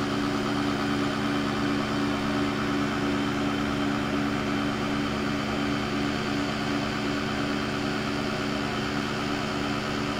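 Engine lathe running steadily under power, its insert tool taking an interrupted facing cut across a metal raised-face flange broken by a bolt circle. A steady drone with a low hum throughout.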